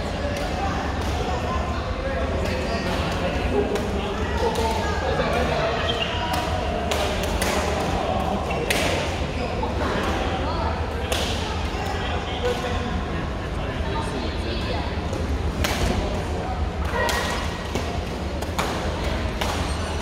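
Badminton rackets hitting shuttlecocks: sharp, irregular smacks from rallies on several courts, over a steady babble of players' voices and a low hum in a large sports hall.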